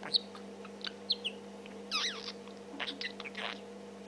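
Budgerigar chattering close to the microphone: scattered short high chirps and clicks, with a quick run of warbled up-and-down pitch glides about halfway through.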